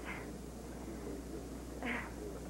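A short, high-pitched vocal sound near the end, over a steady low hum.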